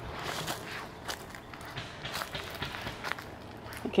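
Footsteps on dry leaves and garden soil: a string of irregular soft crunches.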